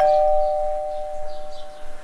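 Two-tone doorbell chime: a higher note followed by a lower one, both ringing on and slowly fading over about two seconds.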